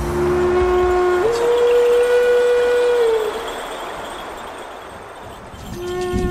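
Flute music: a low note steps up to a long held note, with breath noise, that sags slightly and fades away, then the same two-note rise starts again near the end.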